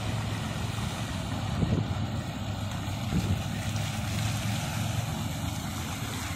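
Fountain jets splashing steadily into a large outdoor basin, an even rushing of water with a low steady rumble underneath. Faint voices come in briefly a couple of times.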